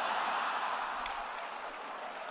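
Theatre audience laughing and applauding together, a steady wash of crowd noise after a punchline.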